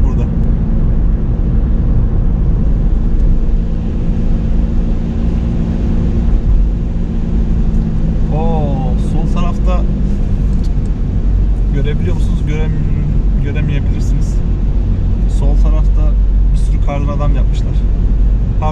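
Car driving on a wet road, heard from inside the cabin: a steady low rumble of engine and tyres.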